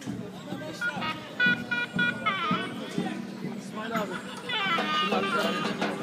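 People talking in a crowd while a high-pitched wind instrument plays short repeated notes and sliding tones, like a mehter band warming up before a performance.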